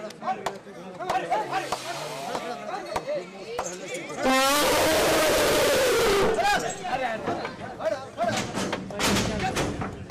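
An Asian elephant gives one loud, harsh trumpet about four seconds in, lasting about two seconds, its pitch rising slightly and then falling. Men shout short calls before and after it.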